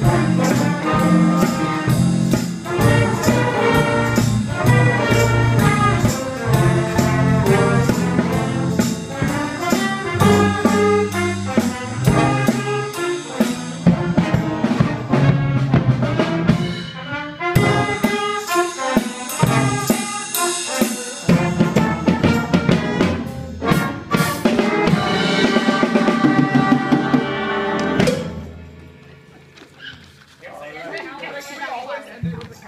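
Middle-school jazz band playing, saxophones and brass together, the music stopping about two seconds before the end.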